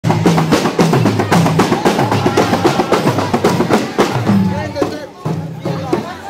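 Drums played loud in a quick, steady rhythm of about four beats a second, with voices mixed in; the drumming stops about four seconds in, leaving crowd voices.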